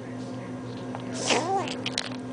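Eight-week-old kitten giving one short squeal that rises and falls in pitch about a second and a half in, made while eating treats. A few sharp clicks follow near the end.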